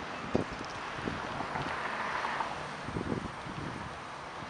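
Wind buffeting the microphone over a steady outdoor hiss, with a few faint soft knocks about a third of a second in and again around three seconds in.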